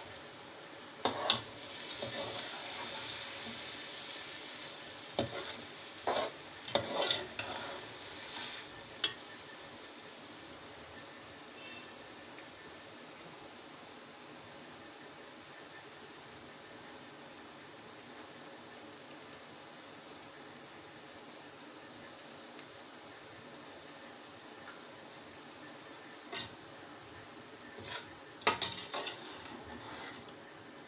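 A metal slotted spoon stirring rice in hot sugar syrup in an aluminium pot, scraping and clinking against the pot in a cluster of strokes over the first nine seconds and again near the end. The syrup hisses on the heat throughout, faint and steady in between the stirring.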